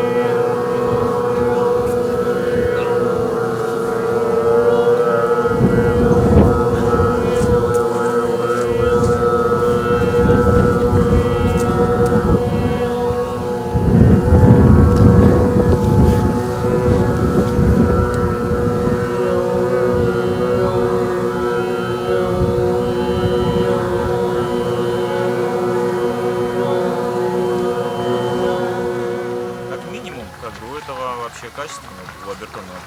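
A group of voices chanting a long sustained drone together in overtone singing, one steady note with whistling overtones wavering above it, ending near the end. Low rumbles of wind buffeting the microphone swell about six seconds in and, loudest, around fourteen to sixteen seconds.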